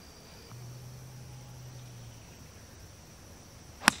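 Golf club striking a teed-up ball: one sharp, loud crack near the end.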